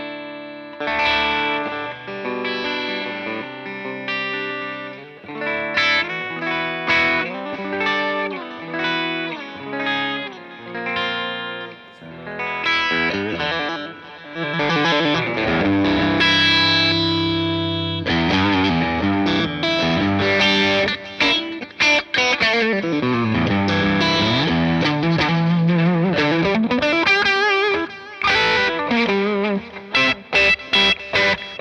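Fender Rarities quilted red-mahogany-top Telecaster electric guitar played through an amp with some overdrive. It opens with separate strummed chords and picked arpeggios, then about halfway through moves into sustained lead lines, with a long slide down and back up the neck near the end.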